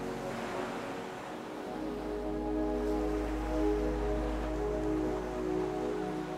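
Slow, sustained ambient pad music with ocean waves washing underneath; a wave swells in near the start and a deep low drone enters about two seconds in.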